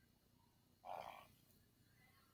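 A single short fart about a second in, lasting about half a second, against near silence.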